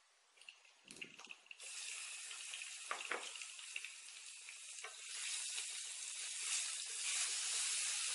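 Spice paste sizzling in hot oil in a wok, a steady hiss that begins after a few light knocks and grows louder about five seconds in.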